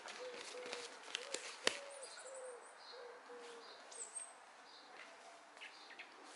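A bird calling in a run of low cooing notes, repeated about every half second and fading out after the first few seconds, with faint high chirps of small birds. Between one and two seconds in come a few sharp slaps or knocks.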